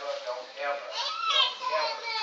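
A small child's high-pitched voice, whining or fussing, rising and falling in pitch with its loudest cry about a second in.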